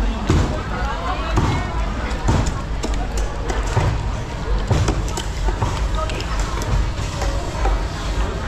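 Cleaver chopping fish on a wooden stump block, a sharp thud about once a second at an uneven pace, over the hubbub of market voices.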